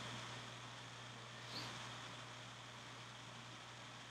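Quiet room tone: a steady faint hiss and low hum, with one faint brief sound about a second and a half in.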